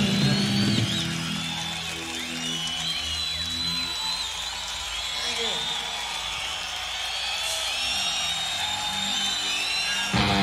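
Live 1970s hard-rock band recording in a sparse passage: after about a second the heavy bass and drums drop back, leaving high, swooping, sliding squeals over a thin backing.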